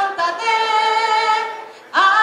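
A woman singing unaccompanied into a microphone, holding long notes with vibrato. The phrase fades out near the end, and the next note comes in sharply right at the close.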